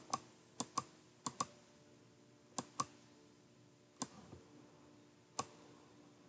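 Computer mouse button clicking, mostly in quick pairs of clicks: four pairs in the first three seconds, then two single clicks.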